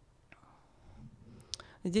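Near silence with faint breathy noise and two small clicks, then a woman starts speaking near the end.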